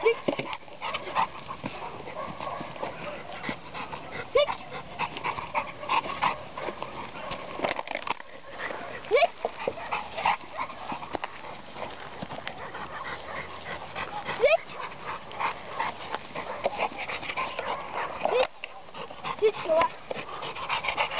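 A dog crunching a plastic bottle in its jaws, giving dense crackles throughout, with a few short rising squeaks.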